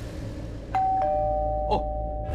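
Two-note doorbell chime: a higher 'ding' about three-quarters of a second in, then a lower 'dong' a moment later, both ringing on.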